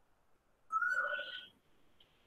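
A single short whistled call, like a bird's, at a fairly high, steady pitch that rises slightly, starting about two-thirds of a second in and lasting under a second.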